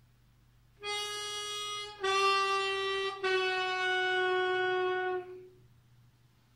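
Diatonic harmonica in A playing three held draw notes on hole 3, each a little lower than the last: the plain note, then bent down a semitone, then bent down two semitones. The last note is the longest and fades out about five seconds in.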